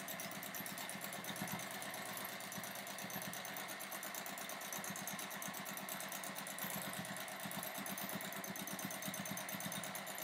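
A home sewing machine running steadily during free-motion quilting, its needle stitching in a rapid, even rhythm.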